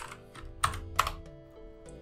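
Computer keyboard keys clicking, about four separate keystrokes, over soft background music with sustained notes.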